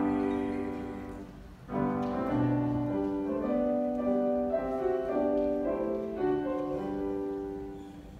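Piano playing a classical accompaniment passage with no voice. A chord dies away, a new phrase begins about a second and a half in, and it fades again near the end.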